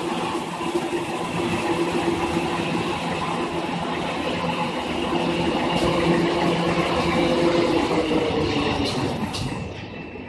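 Automatic toilet paper rewinding line running: a steady mechanical hum and rattle carrying several steady tones. Near the end the tones sag slightly in pitch and the level drops a little.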